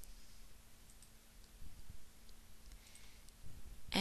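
A few faint computer mouse clicks over low room tone, with a faint steady hum underneath.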